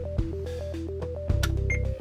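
Background music: a repeating arpeggiated melody over a steady bass and beat. A click and a brief high beep come just before the end.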